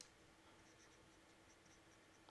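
Near silence, with faint sounds of a felt-tip marker drawing lines on paper and a small click at the start.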